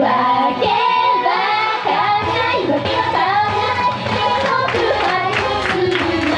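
Idol pop song performed live: two young female singers sing into microphones over a recorded backing track, with a regular beat in the second half.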